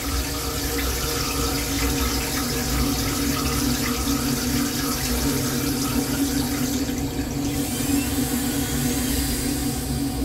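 Metro-North M3 rail-car toilet flushing: blue flush water rushes and swirls through the stainless bowl and drains away, over the steady low rumble of the moving train.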